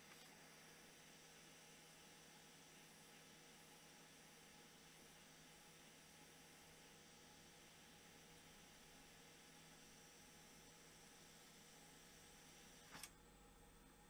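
Near silence: the faint, steady hiss of a hot air rework gun blowing onto a circuit board to melt the solder under an inductor. About a second before the end there is a short click, and the hiss drops away.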